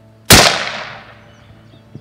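A single rifle shot about a third of a second in: a loud crack that dies away over about a second as it echoes. It is a shot at a rabbit, called a headshot.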